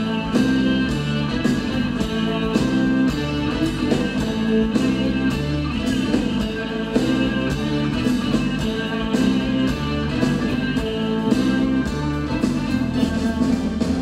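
Live band playing an instrumental passage with no vocals: electric guitar, bass, keyboard and drum kit over a steady dance beat.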